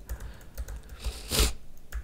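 Soft keystrokes on a computer keyboard as code is typed, with a short, louder hiss about one and a half seconds in.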